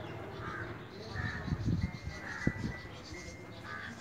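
A bird calling over and over, short calls about once a second. Low thuds and rumbles, with one sharp knock, come about a second and a half in.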